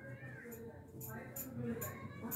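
Faint, indistinct voices in the background, with a short high rising-and-falling call early on and light ticks about twice a second.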